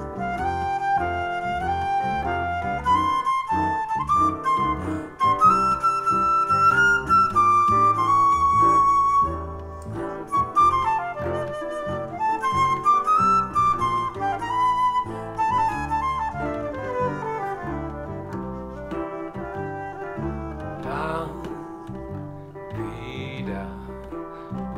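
Instrumental break in a trad jazz tune: a silver flute plays the melody over strummed resonator guitar chords and a ukulele bass line. The flute is loudest in the first half and plays more softly later on.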